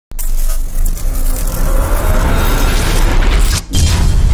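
Cinematic intro sting of music and sound effects: a loud swelling rumble with heavy bass that cuts out briefly near the end, then comes back as a deep boom.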